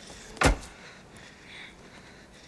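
A car door slammed shut: one heavy thud about half a second in.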